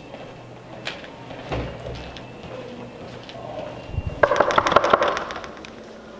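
A quick run of knuckle knocks on a door, about a dozen strokes in under a second, a little past the middle.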